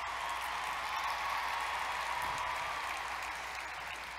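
A large audience applauding steadily, easing off slightly near the end.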